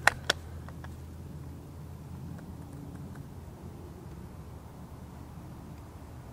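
Two short clicks right at the start, the second a little louder, from the shouldered pump shotgun being handled. After them, a quiet pause with a low steady background rumble.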